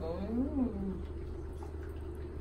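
An adult's drawn-out, cooing "oh" that rises and then falls in pitch over about a second. After it only a steady low hum remains.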